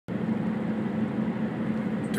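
Steady car road and engine noise heard from inside the cabin of a moving car, with a constant low hum under the rumble.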